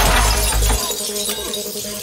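A large glass chandelier crashing to the floor and shattering: a loud crash of breaking glass with a heavy low thud in the first second, then the glass fading out as it settles.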